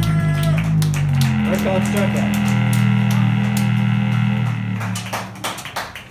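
Live rock band's electric guitars and bass holding one sustained ringing chord that fades after about four and a half seconds, followed by a few sharp clicks and voices near the end.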